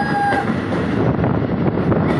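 Passenger train running into a rail tunnel, heard from an open coach door: a loud, steady rumble of wheels and rushing air. A brief held high tone sounds over it near the start.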